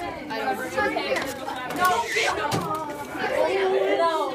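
Several voices talking over one another in indistinct chatter.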